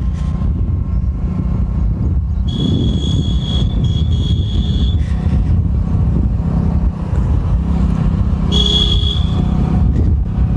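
Steady low rumble of a motorcycle engine and wind while riding. A high-pitched vehicle horn sounds three times: two blasts of about a second each in quick succession a few seconds in, and a shorter one near the end.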